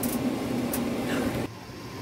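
A steady low hum over room noise, which drops away abruptly about one and a half seconds in.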